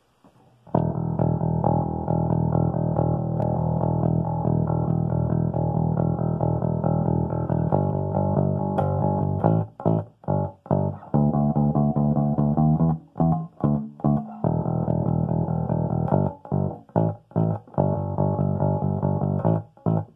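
Electric bass guitar played through an amplifier: first a continuous run of low notes on the low E string, then from about halfway a choppier line with short gaps between the notes.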